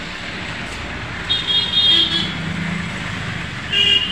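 Steady road traffic noise with vehicle horns honking: a high-pitched horn about a second and a half in, a lower one just after, and another near the end.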